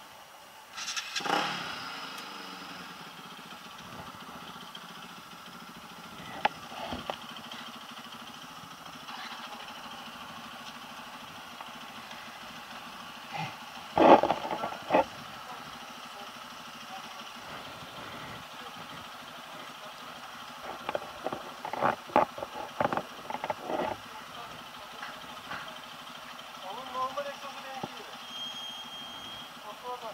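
Yamaha NMAX 155 scooter's single-cylinder engine starting about a second in, then idling steadily. Several sharp clacks come around the middle and again about two thirds through.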